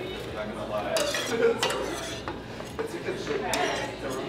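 Metal knife and fork clinking and scraping against a ceramic plate, with a few sharp clinks, the loudest about one and a half seconds in.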